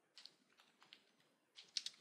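Faint typing on a computer keyboard: a handful of separate keystrokes, with a quick run of keys near the end.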